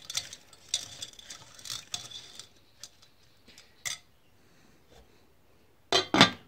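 Bicycle chain on a wire hook being swished through melted paraffin wax in a slow-cooker pot, its links clinking and scraping against the pot for the first two and a half seconds, then a few scattered clicks. A sharp clack right at the end as the glass lid is set on the pot.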